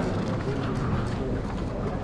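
Low room noise of a large assembly hall with a faint murmur of voices in the pause between spoken names.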